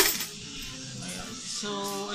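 Coins clattering out of a plastic coin bank onto a pile of coins on a bed sheet, loudest in one burst right at the start, then lighter clinks.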